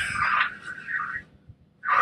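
A fabric backpack being handled and turned around, its fabric rustling with a raspy noise that fades out about halfway through.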